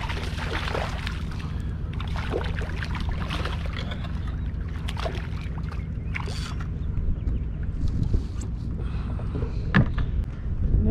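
A small snook on a spinning rod splashing at the water's surface as it is reeled in to a kayak, followed by scattered handling and reel noises and a sharp knock near the end. A steady low hum runs underneath throughout.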